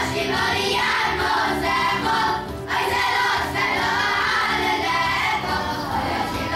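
Boys' choir singing live, with a short break between phrases about two and a half seconds in.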